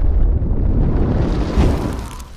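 Explosion-and-fire sound effect for an animated intro: loud and deep, swelling again about one and a half seconds in, then starting to fade.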